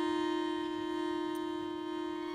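Accordion holding a single steady note with rich overtones, slowly fading.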